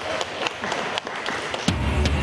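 A crowd applauding, many hand claps over a steady hiss. Near the end a deep bass note of a music sting comes in over it.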